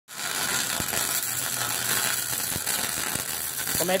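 Electric arc welding on steel plate: the arc runs steadily with a sizzling hiss and a few sharper pops.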